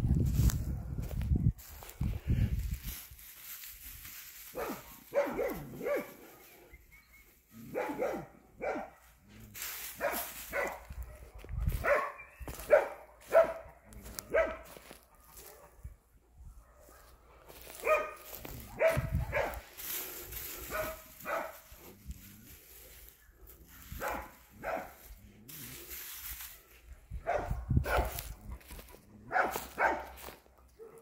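A dog barking in repeated bouts of short barks. There are low thumps in the first couple of seconds.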